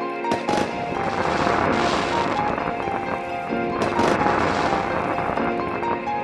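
Soft background music with sustained tones, overlaid by two long bursts of fireworks crackle, one starting just after the start and one about four seconds in.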